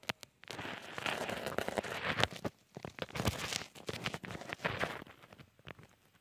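Irregular crackling and rustling with many small clicks, fading out about five seconds in.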